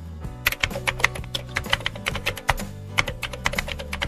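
Rapid, irregular metallic clicking and clinking as the crankshaft and its needle roller bearings are handled and set into the crankcase of a Yamaha 85 hp outboard engine, starting about half a second in, over background music.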